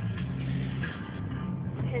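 Steady low hum of a car's engine and road noise, heard from inside the cabin.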